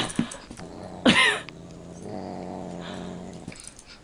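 Large dog growling low and steadily for about a second and a half in the second half while a cat spars with it in play. A person laughs loudly about a second in.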